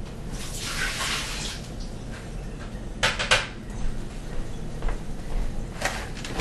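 Water being dumped out of a tray, a splashing wash lasting about a second, followed by two quick knocks of trays being handled a few seconds later and another knock near the end.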